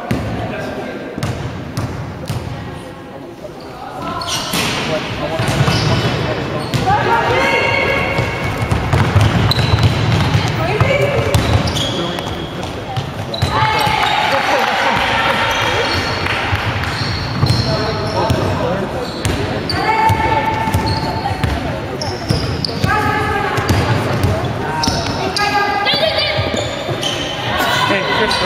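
Basketball being played on a wooden sports-hall court: the ball bouncing, shoes squeaking and players shouting, all echoing in the large hall. It is quieter for the first few seconds and busier from about four seconds in, once play starts.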